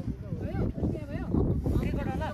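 A person's voice talking, not clearly worded, over a continuous low rumble of wind on the microphone.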